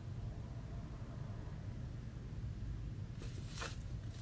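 Steady low room hum, then near the end a brief rustle as a cardboard vinyl record jacket is turned over in the hands.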